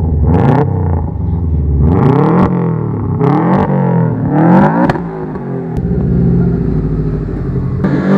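2003 Subaru WRX's turbocharged flat-four engine revved several times at the exhaust, its pitch climbing and falling with each blip. It runs with a freshly fitted up-pipe in place of a cracked one that had kept the car from boosting fully.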